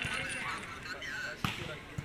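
Voices of players and onlookers calling out on the court, with two sharp volleyball impacts: a faint one at the start and a louder smack about one and a half seconds in.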